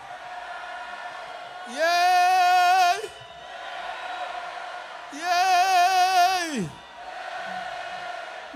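A male singer holding long wordless sung calls into a microphone, twice. Each note lasts about a second and a half, sliding up at the start and falling away at the end, and the second wavers with vibrato.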